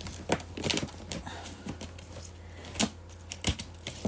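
A cardboard parcel being worked open by hand: fingers and a small blade pick and scrape at the stiff flaps, a scatter of sharp, irregular clicks and scratches. The box is stuck shut and won't open easily.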